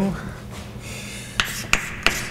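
Chalk on a blackboard: faint scratching of a formula being written, then two sharp taps of the chalk against the board near the end.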